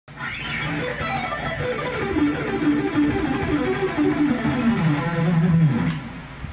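Charvel electric guitar playing a fast pentatonic run with alternate and economy picking. The notes step steadily downward in pitch and end on a held low note just before the end.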